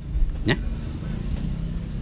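A low, steady engine rumble, like a motor vehicle running nearby, under a single short spoken word about half a second in.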